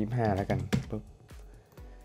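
Computer keyboard keystrokes: a few separate sharp clicks, the loudest about three-quarters of a second in, as a new value is typed into a software field. Faint background music runs under them.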